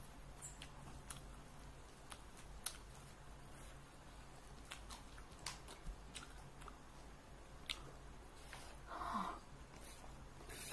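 Faint close-up chewing of a mouthful of fried rice, with scattered small mouth clicks, and a brief louder sound about nine seconds in.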